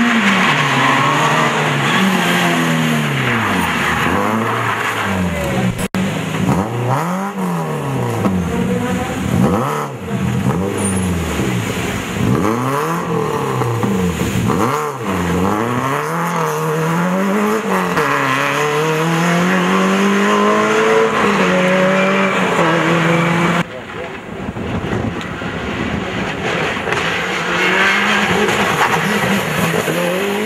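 Rally car engines revving hard, the engine note climbing and falling again and again as the cars accelerate and change gear. The sound cuts abruptly a little past two-thirds of the way through to another car's engine.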